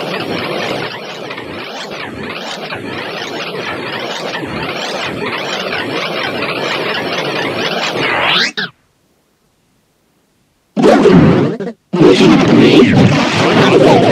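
Heavily distorted, effect-processed audio: a dense, harsh wash of noise with a wavering, pulsing edge for about eight seconds, rising sharply just before it cuts out. After about two seconds of dead silence it comes back loud and harsh, broken by one brief gap.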